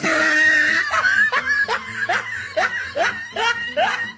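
A person laughing hard: a loud high cry at the start, then a run of short rising bursts about three a second.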